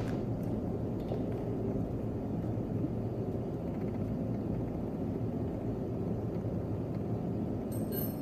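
Steady low hum of shop machinery, with a few faint metallic clicks from a hex key turning the ball nut locking screw on a CNC knee mill's quill drive, and one sharper click near the end.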